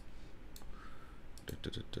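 Sharp clicks from someone working a computer. There is one click at the start and one about half a second in, then a quick run of four or five near the end.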